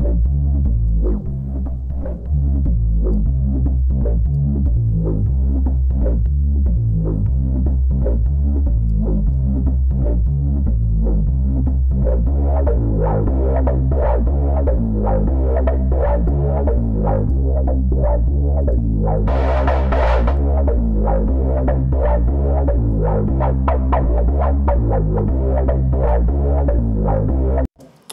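Softube Monoment Bass sampler-synth playing a looping electronic bass line, widened in stereo by its spatialization effect. The filter cutoff is opened partway through, so the tone grows brighter. A short burst of hiss comes about two-thirds of the way in, and the loop cuts off suddenly just before the end.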